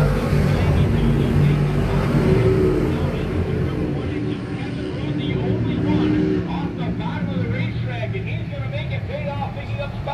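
A pack of dirt-track sportsman modified race cars running at full throttle past the grandstand, loudest in the first few seconds and fading after about six seconds as the field pulls away down the track.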